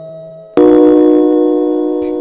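Love-song music between sung lines: a held note fades out, then about half a second in a sustained keyboard chord starts suddenly and slowly fades.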